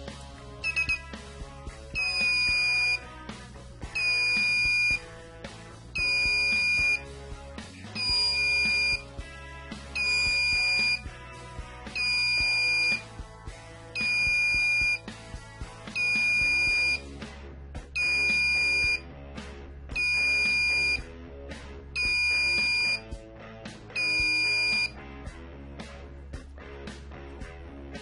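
Small electronic buzzer on a homemade standalone Arduino board beeping on and off in a steady pattern: a high-pitched beep about a second long every two seconds, twelve times, after a few short chirps at the start.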